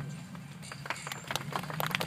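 Footsteps and light knocks on a portable stage platform, a quick run of sharp clicks starting about half a second in, over a steady low hum.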